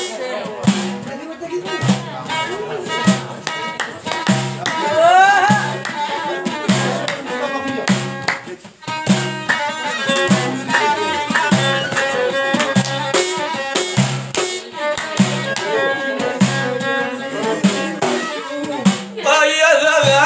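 Amazigh song playing: an instrumental passage led by a bowed fiddle over a steady, rhythmic hand-drum beat, with a brief drop in the music partway through.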